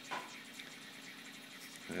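Faint, steady running-water hiss with a low steady hum from a planted aquarium's waterfall and equipment.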